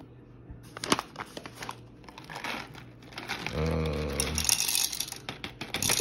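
A foil coffee bag crinkling as it is handled, with a sharp click about a second in. Then an OXO conical burr coffee grinder starts grinding beans, a hiss that grows stronger toward the end.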